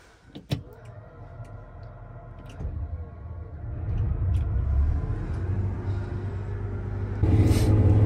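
A sharp click about half a second in, then a Case IH combine's engine and machinery running up to speed, heard inside the cab: a low rumble with a rising whine that grows steadily louder and steps up again near the end.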